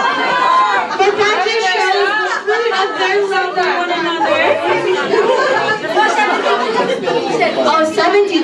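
Several people talking at once in a large room: overlapping crowd chatter with no single clear voice.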